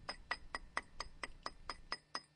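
A 3-inch steel chisel chipping a ridge off a concrete footer: a quick, even run of sharp metallic taps, about four or five a second, each with a brief ring. The concrete is only a couple of days old and still soft enough to knock off easily.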